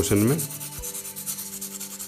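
Charcoal pencil tip rubbed on a sandpaper block in small circular strokes: a quick, even run of scratchy rubbing as the charcoal is sanded to a slightly rounded point.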